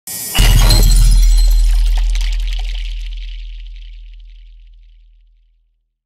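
Intro sound effect: a brief lead-in, then a sudden loud crash with a deep boom that rings on and fades out over about five seconds.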